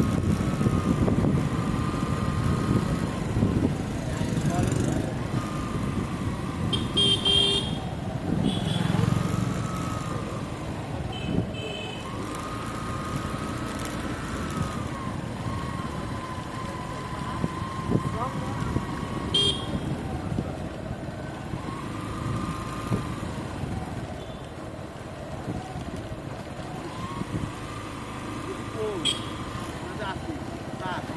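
Low, continuous rumble of a moving vehicle's engine and road noise, with a high wavering tone that rises and falls and comes and goes every few seconds.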